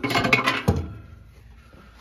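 Paper towel rubbing and scrubbing against the microwave's inside surfaces in a short scratchy burst, ending in a dull knock less than a second in.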